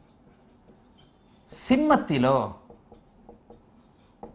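Marker writing on a whiteboard: a few short, faint strokes, most of them in the second half, with a brief spoken phrase just before the middle.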